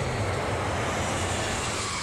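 Jet aircraft flying past, used as a travel sound effect: a steady rushing noise with a low hum that drops in pitch at the start.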